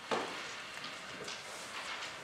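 Room noise: irregular rustling and small knocks and scrapes of people moving in their seats and handling paper, with one louder scrape just after the start.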